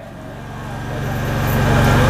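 A low, steady rumble with a faint hum, growing gradually louder.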